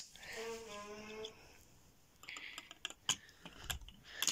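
Plastic Lego pieces being handled, a scattered run of light clicks and knocks in the second half, after a soft brief hum from a voice early on.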